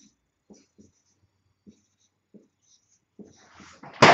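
Faint, short strokes of a marker pen writing numbers on a whiteboard, a few separate scratches and taps spread over the seconds.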